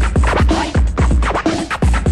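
DJ mix of electronic dance music with a steady kick-drum beat and turntable scratching over it, played back from an old cassette recording of a radio broadcast.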